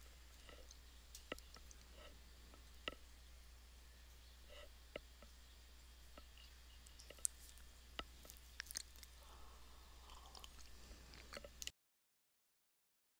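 Near silence: a faint low hum with scattered soft clicks, cutting to dead silence shortly before the end.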